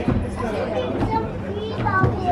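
Several people chattering, children's higher voices among them, over a steady low hum.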